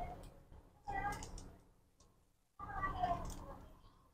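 A cat meowing twice, faintly: once about a second in and again at about three seconds.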